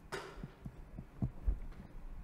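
Marker writing on a whiteboard: a short scratchy stroke just after the start, then several soft, low knocks as the pen and hand work against the board.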